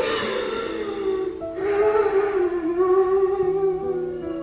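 A woman in labour crying out in two long, wavering cries, the second louder, over instrumental background music.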